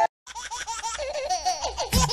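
Laughter: a quick string of high, repeating 'ha-ha' pulses that starts right after a brief total silence. A music beat comes in right at the end.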